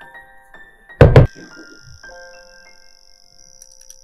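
A single loud thunk about a second in, from an amber spray bottle set down on a wooden table, over soft piano background music.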